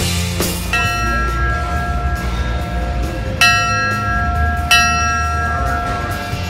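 An antique fire engine's bell struck three times, about a second in, then twice more near the middle, each strike ringing on and fading slowly. Rock music plays underneath.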